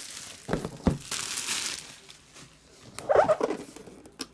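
Handling of a shrink-wrapped cardboard box: two sharp knocks as it is moved on the table, then crinkling plastic wrap and cardboard rustling. A second bout of rustling and scraping comes about three seconds in.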